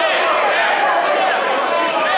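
Crowd chatter: many voices talking at once in a packed room, a steady hubbub with no one voice standing out.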